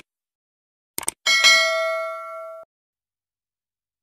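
Subscribe-button animation sound effect: two quick mouse clicks about a second in, then a bright notification-bell ding that rings for about a second and a half and cuts off suddenly.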